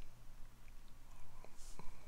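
A quiet pause: a faint steady low hum, a soft breath about one and a half seconds in, and a few faint clicks.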